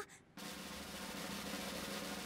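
A steady snare drum roll, a suspense cue in the soundtrack, starting about a third of a second in.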